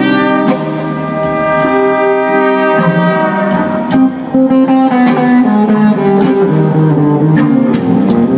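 Live band playing a blues jam, with long held brass notes over electric guitar and drums.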